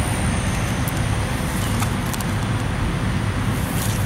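Steady road-traffic noise: an even low rumble with hiss, with no distinct events.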